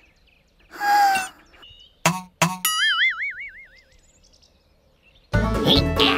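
Cartoon sound effects: a brief voice sound, two quick knocks, then a wavering boing tone that wobbles and fades over about a second. Cheerful background music starts near the end.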